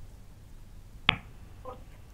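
A single sharp click about a second in, followed shortly by a brief faint sound, over a low steady hum.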